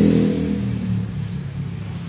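A motor vehicle's engine running close by, a low steady hum that is loudest at the start and fades away over the first second or so.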